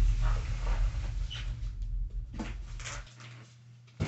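Large cardboard box being shifted and dragged on the floor: a low rumble with several knocks and scrapes, the rumble stopping suddenly about three seconds in.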